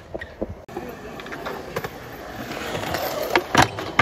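Extra-wide skateboard's wheels rolling over concrete, getting louder as it approaches, then sharp clacks near the end as the board strikes the rail and the truck slips under it, ending the trick in a bail.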